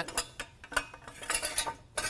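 Steel corner connectors clinking and scraping against a 2x4 as they are slid along it, in a run of short, sharp clicks and knocks.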